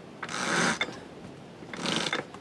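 A rope line being hauled in by hand on a sailboat, two pulls about a second apart with the rope sliding and hissing as it comes in. This is the anchor bridle line being tensioned to hold the boat at an angle to the swell.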